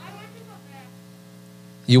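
Steady electrical mains hum, with faint, distant speech in the first second. Loud close speech starts near the end.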